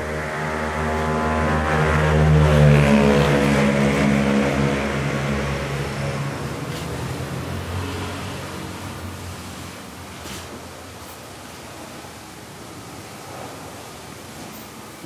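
A motor vehicle's engine going past. It grows louder over the first two to three seconds, then fades away over the following several seconds.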